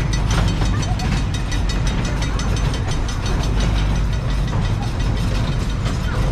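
Miniature ride-on park train running, heard from aboard: a steady low rumble with a fast, even rattling clatter from the wheels and cars on the track.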